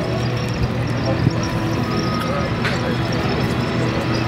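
Armoured personnel carrier engines running with a steady low hum, with indistinct voices over it.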